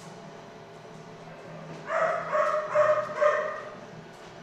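A dog whining in a run of four or five short, high yelps over about two seconds, starting about halfway through.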